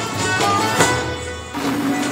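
Persian traditional ensemble music, with a tar picked in quick plucked notes over sustained bowed-string notes. The music dips briefly near the end, then a new low note comes in.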